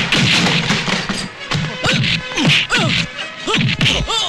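Film fight sound effects: a quick run of punch and slap hits, roughly two a second, over background music, with short sounds falling in pitch between the hits.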